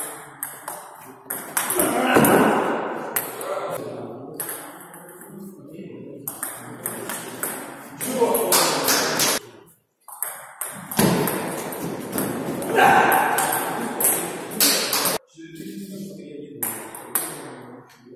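Table tennis rally: a celluloid-type ball struck back and forth with rubber-faced bats and bouncing on the table, a quick run of sharp clicks and pings, with short pauses between points.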